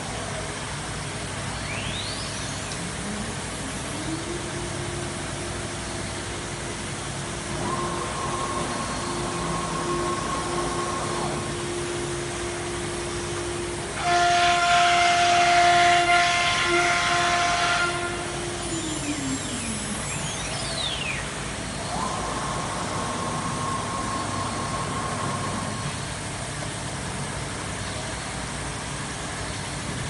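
CNC wood router with a linear automatic tool changer running. A steady machine tone comes up about four seconds in and winds down about twenty seconds in, with rising and falling servo-drive whines as the gantry travels. A louder hissing burst with a hum lasts about four seconds around the middle.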